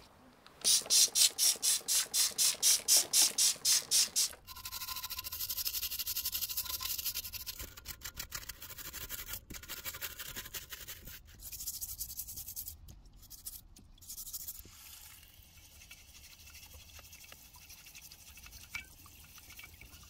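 Stiff brush scrubbing a soapy, rusty jack housing during degreasing. It opens with a quick run of hard strokes, about four a second, then turns to a steady hissing scrub that thins out in the second half.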